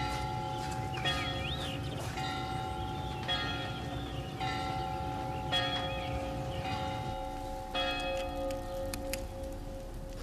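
Church bells ringing in sequence, a new bell struck about once a second and each ringing on under the next.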